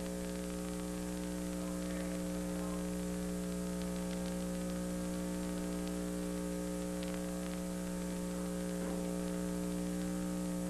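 Steady electrical mains hum, a stack of fixed buzzing tones, over a hiss of static on the audio track, unchanging throughout.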